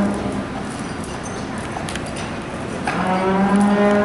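Cattle mooing: one long steady call tailing off about half a second in, and a second long call starting about three seconds in.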